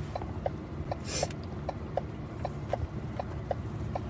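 Steady, rapid electronic ticking inside a vehicle cab, three or four short ticks a second, over a low rumble. A brief rustle about a second in.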